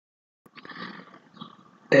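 Near silence, then a faint soft rustle of noise from about half a second in. Right at the end a man's voice starts speaking loudly.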